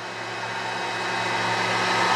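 Atezr P20 diode laser engraver's gantry travelling along its Y axis during a framing run: a steady whirring of the machine's motors that grows gradually louder as the gantry comes nearer.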